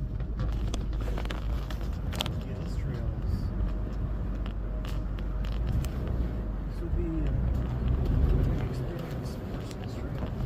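Cabin noise inside a 2003 Toyota Land Cruiser driving on a dirt trail: a steady low rumble of engine and tyres, with a few scattered light clicks and knocks as the truck rides over the rough ground.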